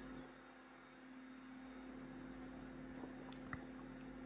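Quiet room tone with a faint steady hum, and a couple of faint ticks about three and a half seconds in.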